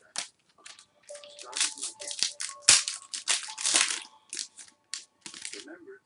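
Foil trading-card pack wrappers crinkling and being torn open by hand, with cards handled, in a dense run of short crackly rips that is loudest near the middle.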